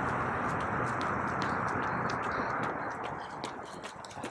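Running footsteps on asphalt, a steady rhythm of about three shoe strikes a second, over a steady rushing noise that fades toward the end.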